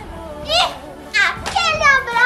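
Young girls' voices calling out three times, high-pitched and gliding, as they play, over faint background music.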